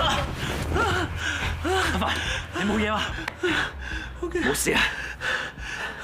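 Men gasping and making short, strained wordless cries of effort, with heavy breaths in between, as one man hauls another up over a balcony railing.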